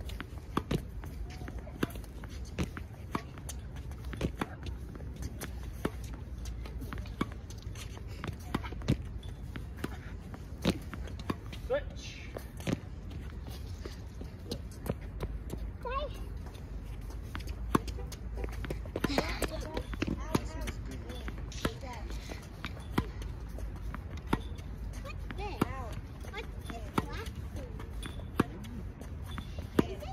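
Tennis balls being struck with rackets and bouncing on a hard court during a ball-feeding drill: a run of sharp, irregular pops about a second or so apart, with voices now and then.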